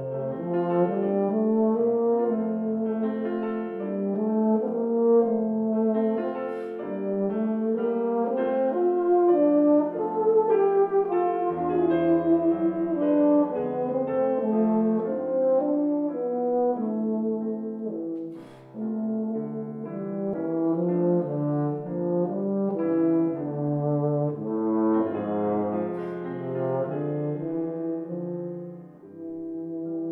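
Euphonium playing a lyrical lullaby melody of held, connected notes, accompanied by grand piano. About two-thirds of the way through the sound briefly drops in a short break before the melody resumes.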